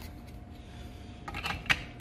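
Plastic display case being slid into its plastic handlebar dock: a few light plastic clicks and taps, with one sharper click near the end.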